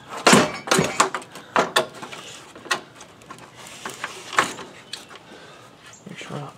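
Plastic radiator cooling-fan shroud clunking and scraping against engine-bay parts as it is worked up and out by hand: a series of knocks, the loudest in the first second.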